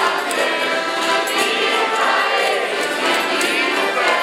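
A large crowd singing a folk song together in chorus, over jingling hand-held percussion.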